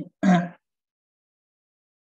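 A man's voice gives a short spoken syllable in the first half second, then the audio drops to dead silence.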